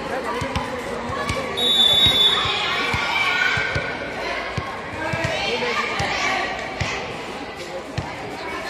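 A basketball bouncing on the court in repeated, irregular thumps under spectators' chatter, with a brief high steady tone about two seconds in.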